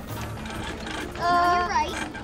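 Film soundtrack with background music over a low rumble. About a second in, a loud, held, high-pitched tone comes in and slides down in pitch as it ends.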